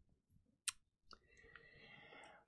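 Near silence broken by a single short click about two-thirds of a second in, then a faint breathy sound near the end.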